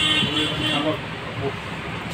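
A vehicle horn sounds steadily and stops about a second in, with low talk underneath.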